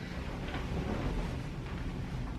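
Soft rustling of a bed duvet as someone shifts across the bed and climbs out, over a steady low rumble.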